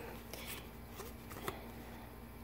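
Faint rustling and light clicks of playing cards being handled and slid apart in the hands, with a slightly sharper click about one and a half seconds in.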